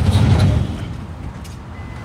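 Low rumble of road traffic, loudest in the first half-second and then fading to a quieter steady hum.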